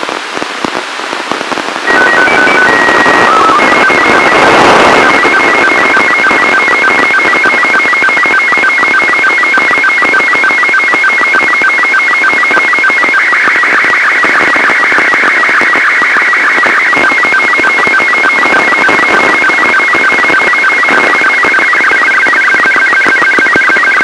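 Slow-scan television (SSTV) signal from the ARISSAT-1 amateur radio satellite, received over radio hiss. After about two seconds of plain hiss, a short run of steady stepped tones marks the start of the picture. Then a rapid, evenly repeating warble of shifting tones follows, the line-by-line picture data of a Robot 36 image.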